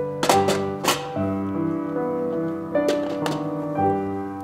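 Slow, gentle piano music with held chords that change every second or so. A few sharp clicks or taps cut in over it: three in the first second and another around three seconds in.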